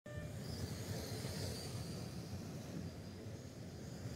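Electric RC race cars running laps on an indoor carpet oval, their motors giving a faint, wavering high whine over a steady low rumble of the hall.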